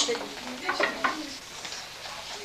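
Faint chatter of young children in a classroom over a steady hiss, the hiss typical of an old VHS recording. The voices fade after about a second and a half.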